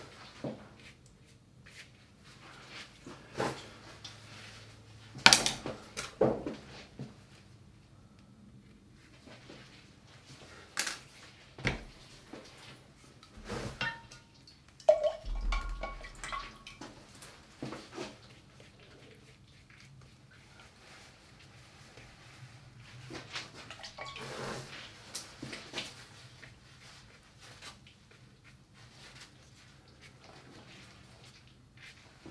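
Scattered taps and knocks of brushes and jars being handled, with water sounds as a brush is rinsed in a glass water jar. A short ringing clink of the glass comes about halfway through.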